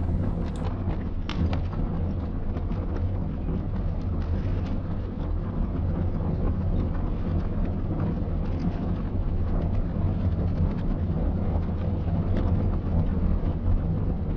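A steady low rumble with scattered faint crackles, unchanging throughout; no speech or music.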